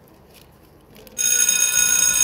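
School bell ringing, starting suddenly about a second in with a high, steady ring: the signal that class is starting.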